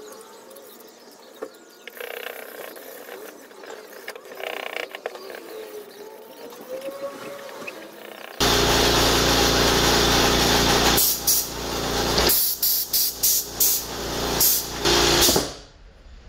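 Sandpaper rubbing back and forth on a bone-coloured knife handle. About eight seconds in, a loud hiss of compressed air from a blow gun starts suddenly with a low hum under it, holds for a few seconds, then comes in a string of short blasts, blowing the sawdust off the work, and stops just before the end.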